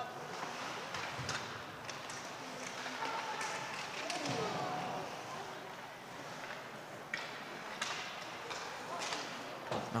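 Ice hockey rink sound: skates scraping the ice and sticks and puck knocking sharply every second or so, over a steady hum of faint, distant voices from players and spectators.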